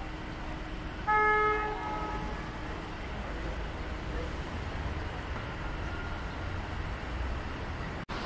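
A car horn sounds one short toot of about half a second, about a second in, over a steady low rumble of street traffic.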